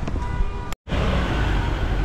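Outdoor street noise: a steady low rumble of wind on the microphone with vehicle traffic. The sound cuts out completely for a split second just under a second in.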